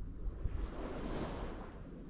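A small wave breaking and washing up the sand: a rush of surf that swells and fades over about a second. Low wind rumble on the microphone runs underneath.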